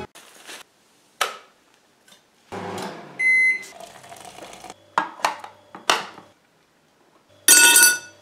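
A run of separate kitchen sounds: short clicks and knocks, a single short electronic appliance beep about three seconds in, and water poured from an electric kettle into a mug. It ends with a loud clatter of crockery.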